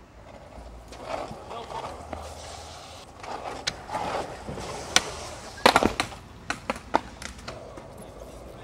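Skateboard wheels rolling and grinding along the top edge of a stone ledge, then several sharp clacks of the board about five to seven seconds in, the loudest near the middle of that run.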